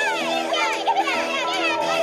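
Children cheering and laughing in quick rising-and-falling cries over music with steady held notes, played back through a TV speaker.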